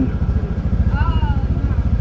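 Honda motor scooter's engine idling with a steady, fast pulsing beat. A brief voice sounds about a second in.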